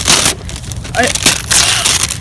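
Gift-wrapping paper being torn and crinkled by hand, in a short burst at first and then a longer tearing rustle through the second half.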